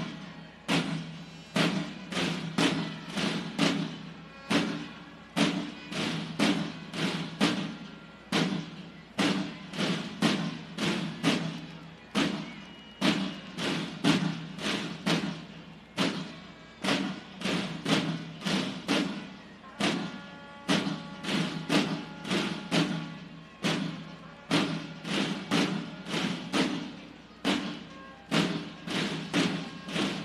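A squad of soldiers marching in step, their boots striking a hard corridor floor together about twice a second, each step echoing.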